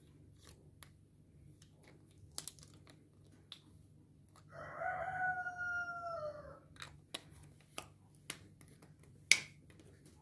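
A small cardboard drink carton being handled and its plastic cap taken off, giving scattered light clicks and taps, with one sharper click near the end. About halfway through, a drawn-out pitched call lasts about two seconds and drops in pitch as it ends.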